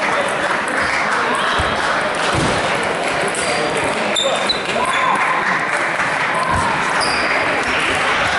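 Table tennis rally: the celluloid ball ticking off rackets and the table, over a steady babble of voices in a reverberant sports hall.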